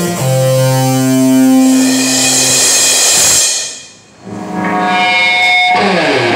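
A small rock band playing live in a room, with electric guitar, bass, keyboard and drums. Long held notes ring and die away to a brief near-gap about four seconds in, then the band comes back in.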